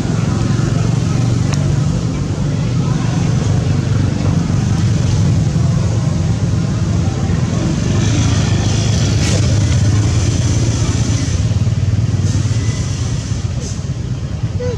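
A steady low engine rumble, like a motor running nearby, with a stretch of higher hiss over it about eight to ten seconds in.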